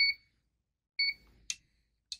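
PRS-801 resistance meter beeping twice, two short identical beeps about a second apart, as it runs a resistance test, then a sharp click about a second and a half in.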